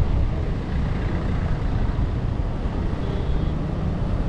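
Wind buffeting the microphone: a steady, uneven low rumble.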